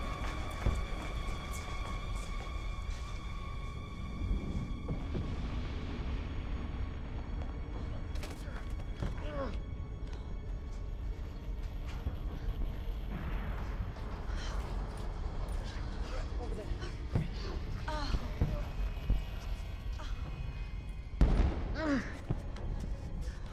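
Film soundtrack of a volcanic earthquake: a steady deep rumble with thuds under tense music whose held notes fade out after about four seconds. Voices cry out and gasp through the second half, and a loud crash comes near the end.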